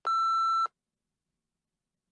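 A single electronic test-timer beep, one steady tone about two-thirds of a second long that starts and stops abruptly. In the TOEIC Speaking test such a beep is the cue that a timed period begins.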